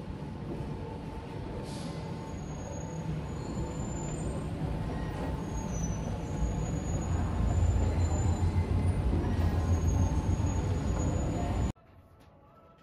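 Steady low rumble of indoor background noise with a faint hum, growing louder in the second half and cutting off suddenly just before the end.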